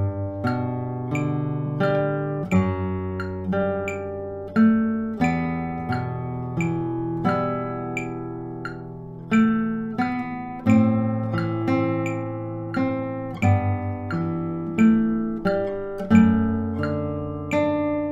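Classical guitar played fingerstyle at a slow tempo: single plucked melody notes, about one every half second, ring over held bass notes.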